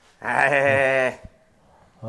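A man's drawn-out, wavering cry of pain, about a second long, while his back is pressed down; a soft thump follows just after it.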